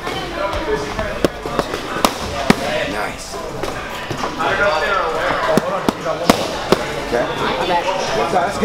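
Boxing gloves smacking against focus mitts during pad work: sharp, separate smacks, three in quick succession in the first few seconds and three more later on.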